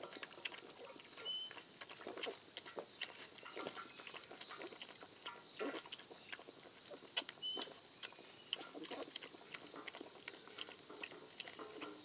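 Two small dogs lapping milk from a steel bowl: quick, irregular clicks of tongues in the milk.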